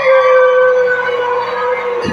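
A singer holding one long, steady note into a microphone through a concert PA system.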